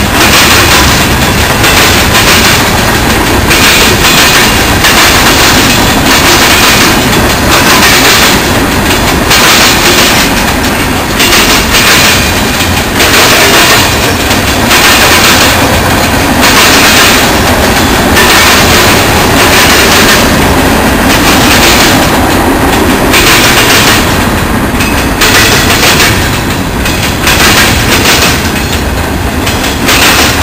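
Freight cars of a mixed manifest train rolling past: a steady loud rumble and rattle of steel wheels on rail, with a regular clickety-clack as the wheel sets cross rail joints.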